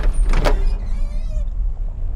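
A car trunk being unlatched and lifted open: two sharp clunks about half a second apart, then a brief mechanical whir, over a steady deep rumble.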